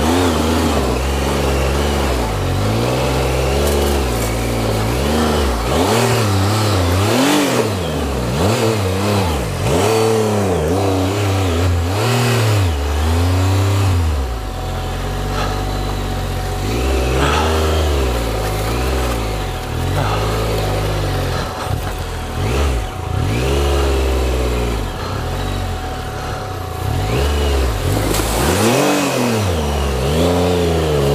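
Triumph Explorer XCa motorcycle's three-cylinder engine riding along a rough trail, its revs rising and falling every second or two with short bursts of throttle.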